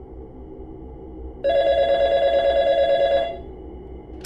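A corded desk telephone rings once: a single electronic trilling ring of about two seconds, starting about a second and a half in and fading out shortly after three seconds. A faint low hum runs underneath.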